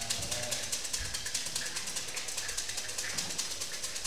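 A rapid, even pulsing rattle, about ten pulses a second and high in pitch, with faint voices underneath.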